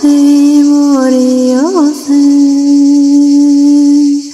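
A single voice chanting a mantra in long, steady held notes, with a quick rise and fall in pitch about a second and a half in and a short break around two seconds before the next long note.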